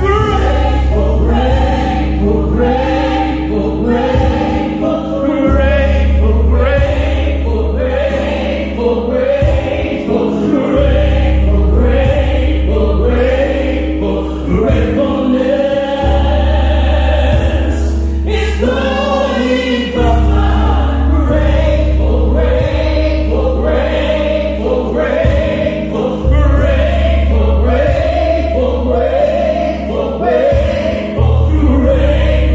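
Gospel choir singing over a low bass line whose long notes change every few seconds.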